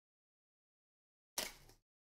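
Near silence, then about a second and a half in, one short sharp rustle of cardboard as a sealed box of Contenders football cards is handled and opened.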